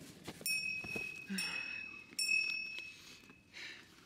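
A high, steady whistled tone, sounded three times in the first three seconds, each time holding one pitch without bending, with brief soft rustling between.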